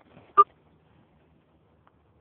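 A phone being handled while someone tries to stop the recording: faint fumbling against the case, then one loud, sharp tap on or near the microphone about half a second in, and a small click near the end.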